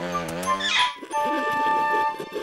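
Cartoon soundtrack music and comic effects: a wavering, bending tone, then a quick upward swoop just under a second in, followed by steady held higher notes.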